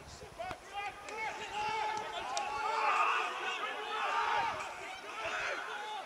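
Several men shouting at once during a rugby match, overlapping calls that swell loudest about halfway through and again a second later.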